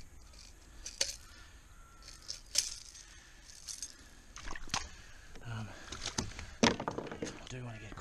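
Fishing gear being handled: several sharp metal clicks and clinks, spaced about a second apart. A man's low voice mutters briefly in the second half.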